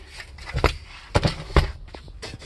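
Handling knocks under a car's dashboard: three sharp clunks, a little over a second in and about half a second apart, as the loose dash radio and the metal around it are knocked by hand.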